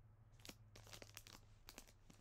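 Near silence: a low steady room hum with a few faint, scattered clicks.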